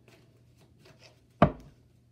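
Tarot cards being shuffled by hand: faint soft clicks of cards sliding, and one sharp knock about one and a half seconds in.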